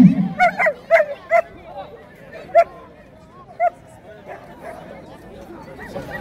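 A dog barking in short sharp barks. There are four quick ones in the first second and a half, then two more spaced about a second apart.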